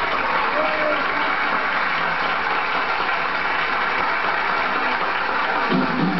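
Live audience applauding and cheering on a jazz record: an even wash of clapping and crowd voices between drum breaks. The drums and band come back in near the end.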